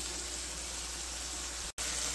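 Hamburger patties sizzling in hot oil in a skillet: a steady hiss that drops out for a split second near the end.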